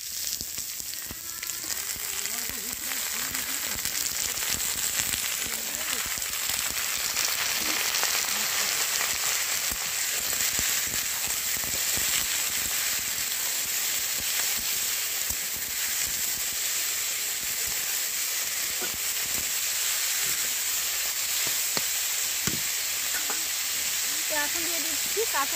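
Potatoes and tomatoes frying in hot oil in a kadai. The steady sizzle builds over the first few seconds, with a few light knocks.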